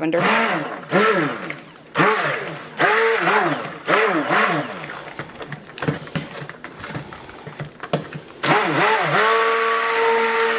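Handheld stick blender run in short bursts in thick cold-process soap batter, its motor whining up and down in pitch with each burst, several times, then held on steadily near the end. It is mixing oatmeal and lavender oil into the batter at trace.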